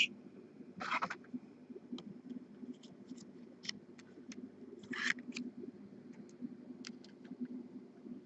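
Faint handling noise of a trading card in a clear plastic holder: scattered light clicks and two short rustles, about a second in and about five seconds in, over a low steady hum.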